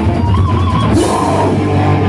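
Loud live heavy band music: distorted electric guitar over a drum kit, played on stage.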